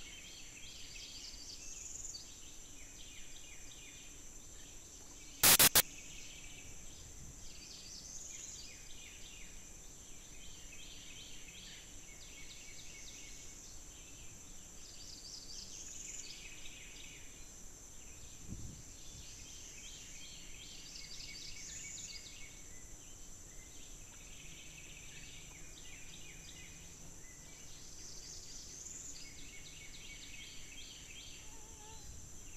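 Swamp wildlife ambience: a steady high insect drone, with chirping calls that come back every few seconds. A single sharp, loud click about five seconds in.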